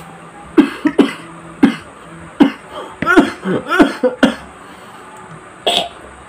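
A young man coughing: several sharp single coughs, then a quicker run of voiced coughs a little past halfway, and one last cough near the end.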